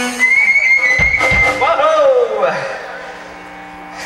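A shrill, steady whistle held for about a second and a half, with two low thumps about a second in, then a drawn-out voice calling out; after that only a low amplifier hum.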